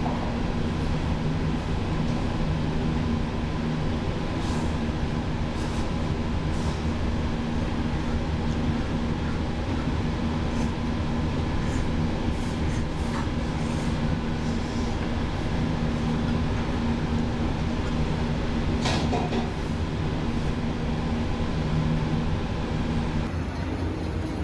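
Ramen-shop room noise: a steady low mechanical hum with scattered light clicks of chopsticks and spoon against the bowl, and one sharper clink about nineteen seconds in.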